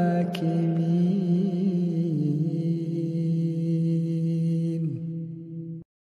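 A Quran reciter's voice holding the final syllable of the last verse in one long drawn-out note, with small melodic ornaments and a slight drop in pitch about two seconds in. It fades and then cuts off abruptly near the end.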